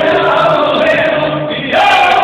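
Group of men singing together in the izvorna folk style, voices holding long sustained notes in close harmony, with a short break near the end before the singing resumes.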